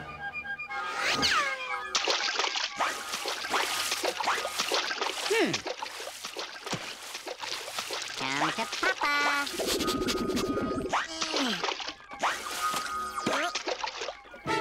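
Cartoon background music with comic sound effects, including several sliding, falling pitch glides.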